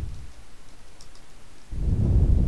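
A few faint computer keyboard key clicks from touch-typing a drill. Loud low rumbling gusts on the microphone fade out just at the start and return near the end.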